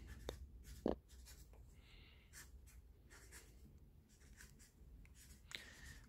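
A marker writing on a sheet of paper: faint scratching strokes of the tip, with a slightly louder tap about a second in.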